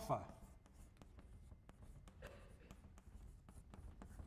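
Chalk writing on a blackboard: faint, irregular taps and scratches of the chalk against the board.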